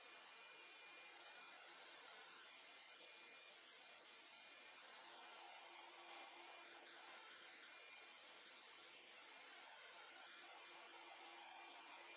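Near silence: a faint, steady hiss with no distinct events.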